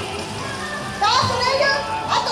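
Yosakoi dance music plays, and about a second in many high voices break in with loud shouted calls over it, the dancers' chanted calls as the routine gets going.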